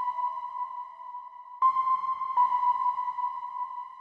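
Intro of a horrorcore hip-hop track: a synthesizer playing held, ringing notes near one pitch, each slowly fading, with a new note struck about a second and a half in and another nearly a second later.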